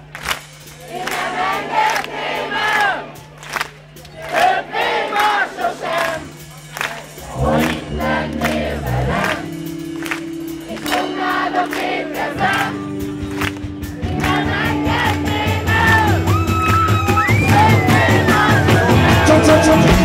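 Rock band playing live with the audience singing along loudly over a held low note. The full band comes back in about seven seconds in, and the music grows louder toward the end.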